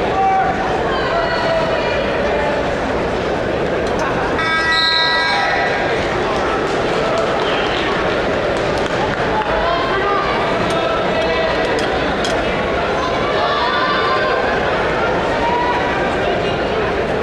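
Crowd of spectators and coaches in an arena shouting over one another throughout a wrestling bout. About four seconds in, a brief held tone with several pitches stands out above the voices for about a second.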